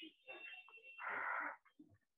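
A person breathing out audibly close to the microphone: a short, noisy exhale about a second in, amid faint mouth and throat sounds.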